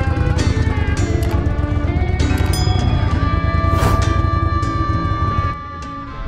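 Background music over a Pro-Drive surface-drive mud motor running as the boat pushes through marsh, with the motor's low drone dropping away shortly before the end.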